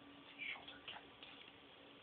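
Near silence: room tone, with a few faint clicks and rustles about half a second in and again near one second.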